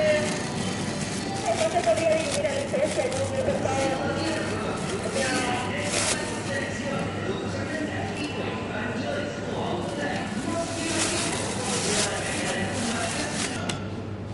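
Thin plastic produce bag rustling and crinkling as it is opened and a pear is dropped in, with louder bursts about halfway through and again a few seconds before the end, over a background of voices in a large store.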